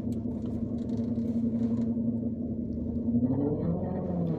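A car engine running, heard inside the cabin as a steady low hum.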